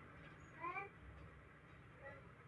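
One short, high-pitched vocal call with a rising pitch, about half a second in, over quiet room noise.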